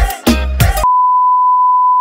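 Music with a heavy bass beat stops abruptly a little under a second in. A loud, steady electronic beep at one pitch takes over.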